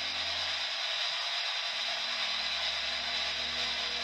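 Ghost box (spirit box) putting out a steady hiss of radio-like static, with no voice coming through.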